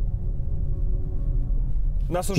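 BMW i7's synthesized in-cabin drive sound during hard acceleration: a faint electronic chorus of steady held tones, like a prayer, over a strong low rumble.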